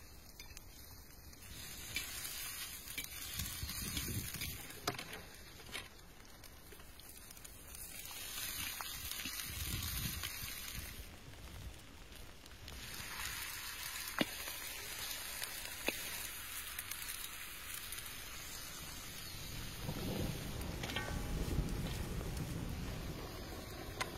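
Oil sizzling in a large cast-iron kazan over a wood fire, with scattered sharp crackles and the scrape of stirring in the pan. Near the end the sizzle grows louder as pieces of raw meat are laid into the hot oil.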